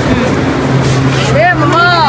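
Voices in a busy market stall over a steady low hum; a voice rises and falls in pitch in the second half.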